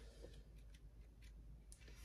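Faint rustle and a few light ticks of paperback pages being handled and turned.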